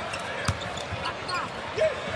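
Basketball dribbled on a hardwood court, with one sharp bounce about half a second in, over a steady murmur of the arena crowd.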